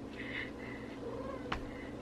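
A house cat meowing faintly, one drawn-out call in the first half, with a short light tap about a second and a half in.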